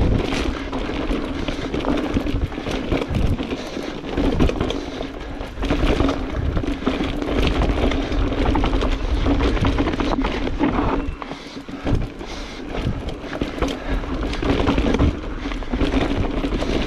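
Mountain bike descending a dirt singletrack: tyres rolling over loose dirt and the bike rattling and knocking over bumps, with wind on the microphone and a steady low hum throughout.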